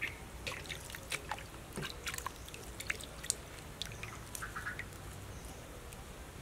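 Wet fresh herb stems being snapped and their leaves stripped off by hand, making irregular small snaps and crackles, with water dripping from the greens into a basin.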